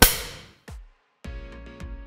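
A clapperboard snapping shut once, a sharp clap with a brief ring, followed by a softer thump. After a moment of silence, music begins with sustained notes.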